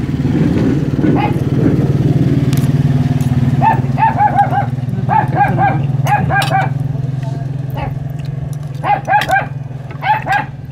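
A motor vehicle engine runs with a steady low drone that fades after about eight seconds. A dog barks over it in short runs of three or four barks, starting about four seconds in and again near the end.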